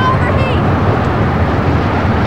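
Loud, steady roar of rushing wind and aircraft noise in a damaged airliner cockpit, a film soundtrack effect. A voice shouts briefly about half a second in.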